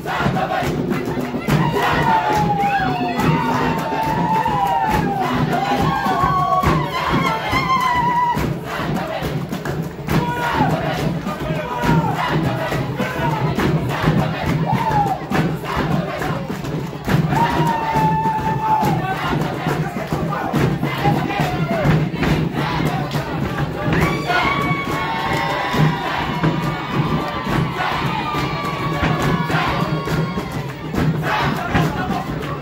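Lugbara traditional dance performance: many voices singing and calling in high sliding lines over a steady percussive beat, with a crowd cheering and shouting.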